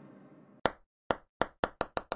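A table tennis ball bouncing on a hard surface, beginning about half a second in, with the bounces coming closer and closer together as it settles. The faint tail of a fading intro chime is heard before the first bounce.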